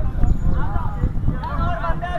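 Several people talking and calling out outdoors over a steady low rumble.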